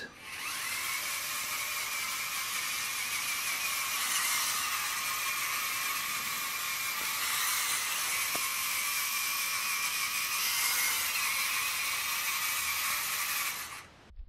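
VEX EDR robot's electric drive motors and gears whirring steadily as the robot makes a series of 180-degree turns under PID heading control. The whir stops suddenly near the end.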